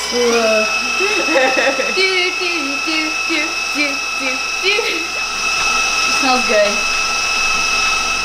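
Electric stand mixer running steadily with a high whine, its pitch stepping up slightly just after the start as it mixes cake batter. Voices talk over it.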